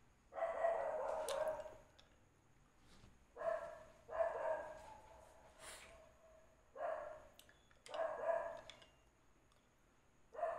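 A dog barking in about five bouts a second or two apart, some bouts holding several barks in quick succession.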